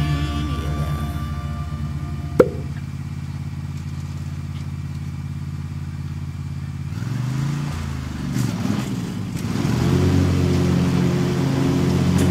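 John Deere riding lawn mower engine running steadily under mowing, with a single sharp knock about two seconds in. Its pitch dips and recovers about seven seconds in, and it grows louder near the end as the mower comes closer.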